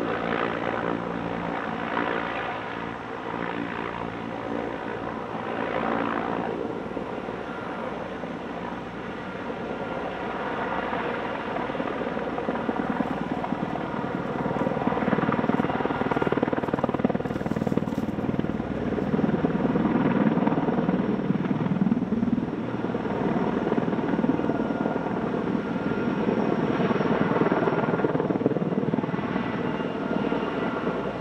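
Helicopter running steadily, engine and rotor noise swelling and easing, louder in the second half.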